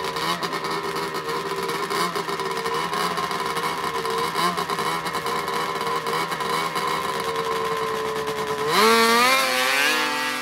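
Two drag-racing snowmobile engines running at the start line, their pitch steady with slight wavering. Near the end they go to full throttle at the launch, the pitch climbing sharply as the sound peaks.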